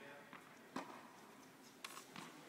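Two faint, sharp knocks of a tennis ball about a second apart, the second as the player swings his racquet.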